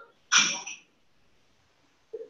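One short, sharp burst of breath from a person close to the microphone, about half a second long, a moment in.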